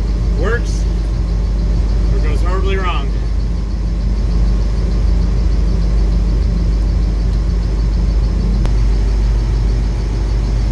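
An engine idling with a steady low drone. A person's voice makes a couple of short sounds in the first three seconds.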